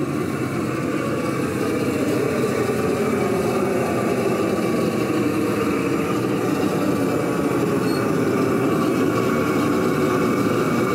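Propane flame weeder's torch burning under its metal shroud, a steady rushing noise that grows a little louder about two seconds in.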